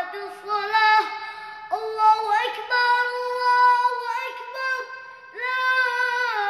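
A boy's high solo voice chanting the adhan, the Islamic call to prayer, in long, ornamented melismatic phrases; a new phrase begins about two seconds in and another near the end.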